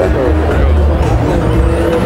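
Busy exhibition-hall ambience: a steady low rumble with voices talking in the background.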